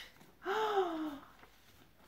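A woman's breathy, voiced gasp of wonder, a drawn-out exclamation falling in pitch, about half a second in and lasting under a second.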